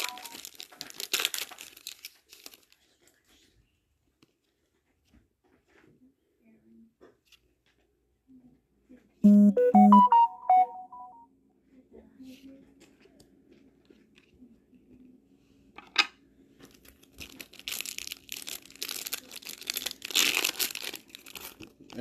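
Foil trading-card booster pack wrappers crinkling as they are handled and torn open: once at the start, and again for the last five seconds. In between it is mostly quiet, with a short snatch of music about nine seconds in and a single click a few seconds later.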